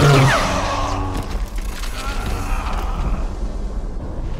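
Film soundtrack of a lightsaber duel: a loud lightsaber slash with a sharp falling whine at the start, orchestral score dying away within the first second or so, then a steady rumbling noise.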